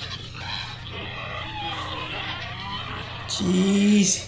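A girl's voice in a horror film growling and grunting, rough and wavering. Near the end a much louder vocal sound cuts in, held on one steady pitch for under a second.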